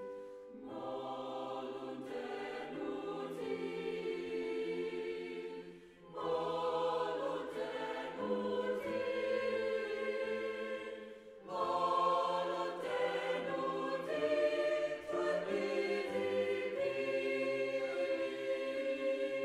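A choir singing slow, sustained chords in long phrases, with brief breaks between phrases about six seconds in and again a little past halfway.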